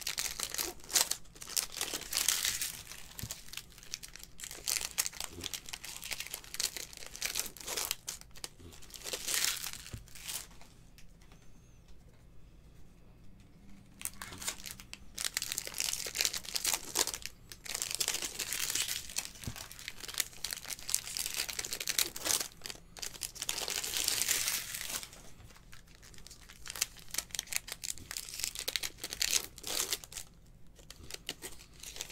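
Plastic foil wrappers of 2020 Bowman Baseball card packs crinkling as they are torn open and pulled off the cards, in repeated bursts with a quieter stretch about halfway through.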